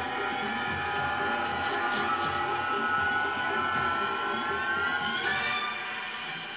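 Film soundtrack playing through the room's speakers: sustained music tones holding steady, with pitches gliding upward a little past five seconds in.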